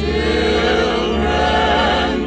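Background music: a choir singing, many voices sustaining a full chord together.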